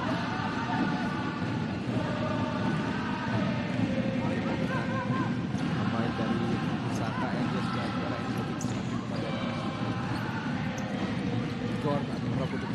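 Indoor futsal court sound during play: players and bench voices shouting over a steady hall noise, with a few sharp kicks of the ball on the hard court.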